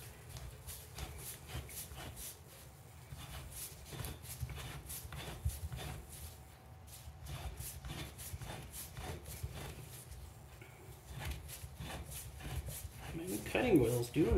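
Steel can of a Fram Ultra Synthetic oil filter turned by hand in a hand-operated oil filter cutter, its cutting wheel scoring through the can: a run of irregular clicks and scrapes over a low steady hum.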